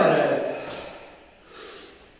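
A man's loud karate kiai shout, falling in pitch as it trails off, followed about a second and a half in by a short, hard breath out.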